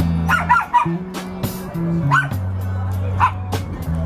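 Live band playing: electric bass holding long low notes under a drum kit with regular cymbal hits and a strummed acoustic guitar. Short high yelping calls cut through the music a few times in quick succession about a third of a second in, then once around two seconds and once around three seconds.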